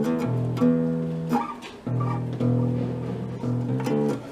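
Acoustic-electric bass guitar played unplugged: a slow line of single plucked low notes, each ringing out for about half a second to a second.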